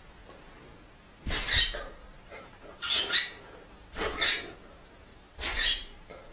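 Four short animal calls, each well under half a second, about a second and a half apart.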